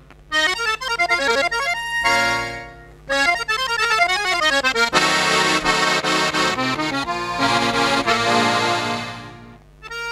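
Chromatic button accordion played solo: quick runs of notes and full chords, with the sound dying away about two and a half seconds in and again near the end before the next phrase.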